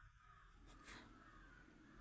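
Near silence: room tone, with a faint brief sound a little before the middle.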